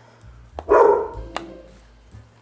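A pet dog barks once, about half a second in, set off by hearing the word 'grandma'.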